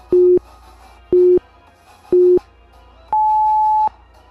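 Workout interval timer counting down: three short, low beeps a second apart, then one longer, higher beep marking the start of the next 30-second interval. Faint background music plays underneath.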